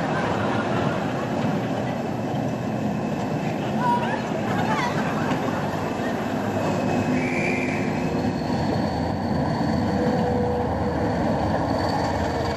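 Passenger train pulling out of a station platform: steady running noise of the train, with a faint high whine over the last few seconds.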